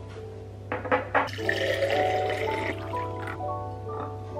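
A drinking glass being filled with water from a kitchen tap. A few sharp clicks come about a second in, then the water runs into the glass for about a second and a half. Light mallet-instrument music plays underneath.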